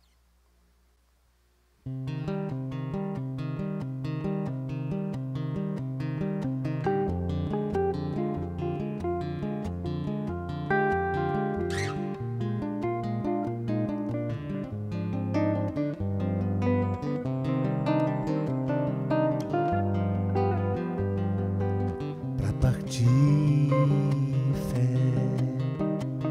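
An acoustic guitar and a hollow-body electric archtop guitar start playing together about two seconds in. They pick an instrumental song intro in an even rhythm, with no singing yet.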